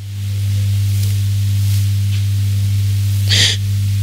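A steady low hum, with one short, sharp intake of breath about three and a quarter seconds in.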